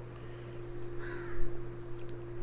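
A single harsh animal call about a second in, over a steady low hum.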